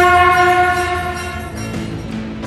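Intro music opening on one long, blown horn note with strong overtones. The note fades about one and a half seconds in as lower notes of the music take over.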